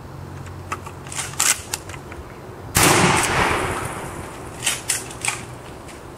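A single shotgun blast about three seconds in, the loudest sound by far, ringing off over about a second and a half. It is preceded by a few sharp handling clicks and followed by clicks of the pump-action slide being worked.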